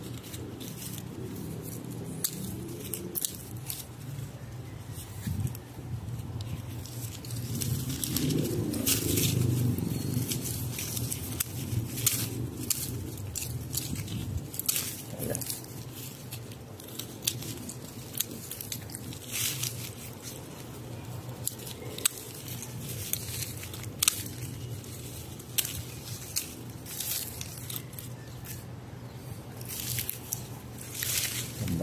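Lemon tree being pruned by hand: scattered sharp snaps and crunches of twigs and leaves being cut and handled, over a low rustle that swells for a few seconds about eight seconds in.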